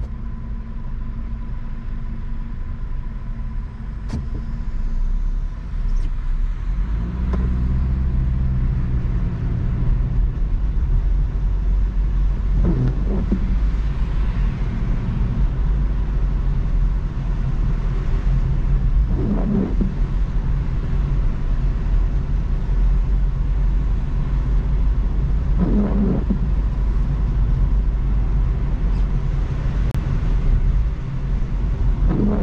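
Car heard from inside the cabin, idling and then pulling away about seven seconds in, and running steadily on a wet road with a low engine and tyre rumble. Three brief swishes come about six and a half seconds apart.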